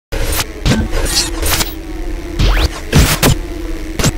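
Animated intro sound effects: a rapid series of whooshes and glitchy hits over a steady low hum, with a quick rising sweep about halfway through.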